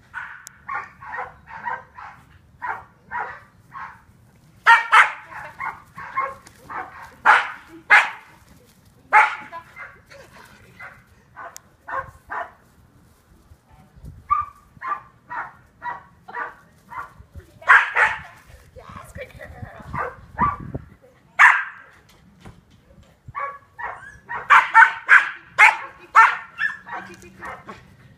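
Young Australian Shepherd barking over and over in quick runs of short, sharp barks, a few of them louder, in excited play during training.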